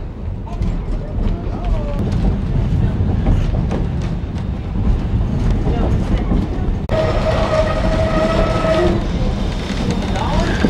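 Steam train running along with a steady low rumble and rapid wheel clicks over the rail joints. About seven seconds in, the steam locomotive's whistle sounds one steady chord for about two seconds, blown for a road crossing.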